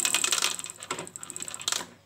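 Yamaha Jupiter MX engine with its cylinder head off, turned over by hand on the kick starter: a rapid run of light metallic clicks from the kick-start ratchet and gears, with a sharper click near the end. The engine is being cranked to drive the oil pump and check that oil rises to the cylinder head.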